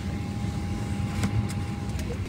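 Steady low hum of an airliner cabin's air and ventilation with the plane on the ground. A thin steady tone runs over it and stops near the end, and there are a couple of light clicks about a second in.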